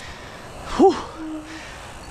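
A man's short "woo" exclamation about a second in, rising then falling in pitch, over faint steady background noise.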